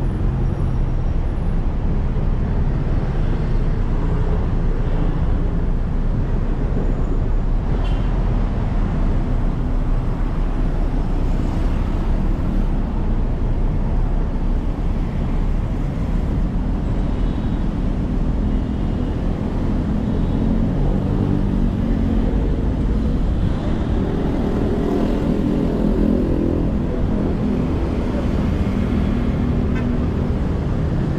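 City road traffic: a steady rumble of cars and motorbikes going by, with an engine passing close in the second half.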